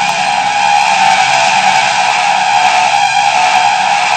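A very loud, harsh, distorted noise: a steady screech-like blare with no rhythm or pitch change. It cuts off suddenly near the end.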